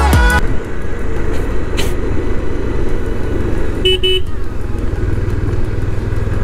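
A motorcycle running steadily under way, its engine mixed with road and wind rush. About four seconds in, a vehicle horn gives two short beeps.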